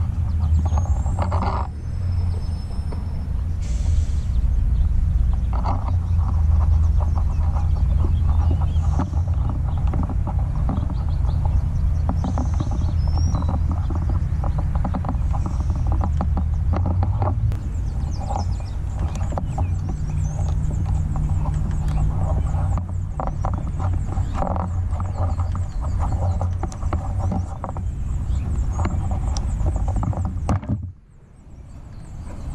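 A steady low rumble, with light clicks and rustles of hands twisting electrical wires together in a wire connector, and a few faint bird chirps now and then.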